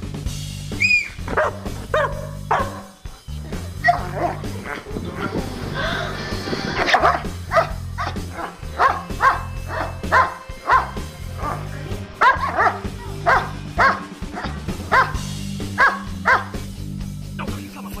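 German Shepherd barking repeatedly, with short sharp barks that come about twice a second through the second half, over background music.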